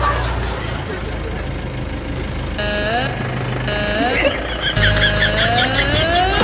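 Low, steady running of a safari vehicle's idling engine close by. From about two and a half seconds in, clear pitched tones with rising slides come in over it, in short spells that grow busier near the end.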